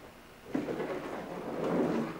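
A plastic watercolour palette being turned around and slid on a tabletop: a rough scraping rumble that starts about half a second in and grows toward the end.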